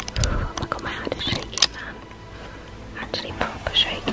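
A person whispering, mixed with sharp clicks and rustling from clothing and handling of the camera.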